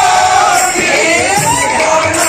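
Live kirtan music: voices sing and shout in wavering, gliding lines over beating barrel drums, with a crowd shouting and cheering.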